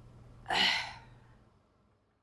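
A woman's single heavy sigh, a breathy exhale about half a second in that fades over about a second, given in grief while she is tearful over her husband's death.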